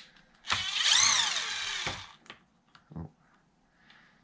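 A small electric power-tool motor whirs for about a second and a half, its pitch rising and then falling as it spins up and winds down, ending with a click.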